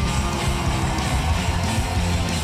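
Punk rock band playing live: strummed electric guitars, bass and drums in an instrumental stretch between sung lines.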